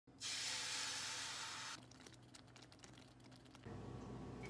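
Beaten egg hitting a hot, oiled square frying pan: a loud sizzle that lasts about a second and a half, then settles into a light, irregular crackle. A steady low hum comes in near the end.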